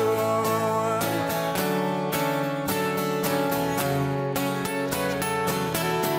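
Two acoustic guitars strummed together in a steady rhythm, an instrumental passage of a live acoustic rock song.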